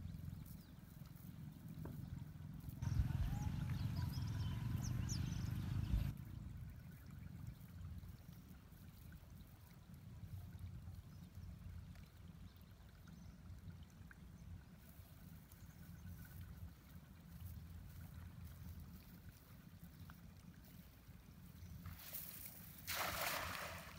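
A wet cast net being gathered and arranged by hand, water trickling and dripping from it, over a low steady rumble; a louder stretch about three seconds in lasts about three seconds.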